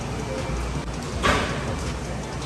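Grocery store ambience: a steady background hum with faint music playing, and a short rustling noise a little past a second in.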